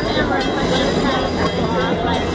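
Amtrak passenger cars rolling past at close range, a steady rumble of wheels on rail with people's voices over it.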